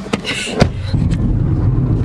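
Inside a moving car: steady low rumble of engine and tyre noise, which starts abruptly after a sharp click about half a second in.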